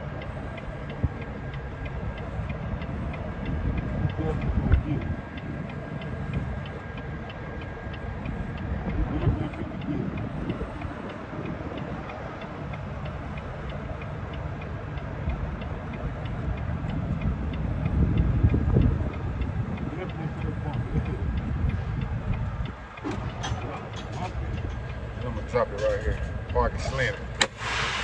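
Semi-truck diesel engine running at low speed, heard from inside the cab while the rig is backed into a loading dock. The rumble swells a few times as the throttle is applied. A voice comes in near the end.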